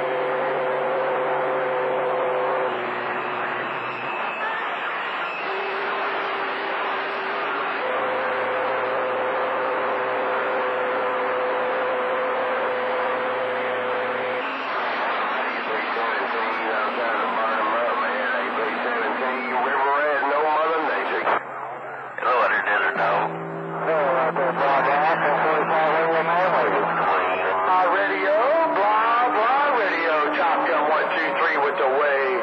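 CB radio receiving channel 28 skip: static with garbled distant voices buried in it. Several steady whistle tones of different pitch come and go from overlapping carriers. The signal briefly drops out a little after twenty seconds in.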